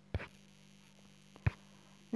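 Steady low electrical hum from the recording setup, with two short sharp clicks about a second and a half apart.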